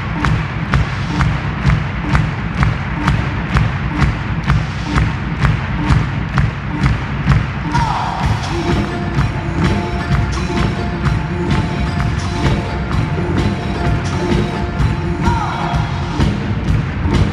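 Amplified live pop music with heavy bass and a steady beat of about two beats a second; held keyboard notes come in about halfway.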